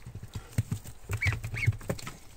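Young white domestic waterfowl moving about in straw bedding: a run of short soft knocks and rustles, with two brief high peeping calls a little past the middle.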